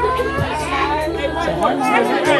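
Several people talking over one another in lively chatter, with a steady low hum underneath.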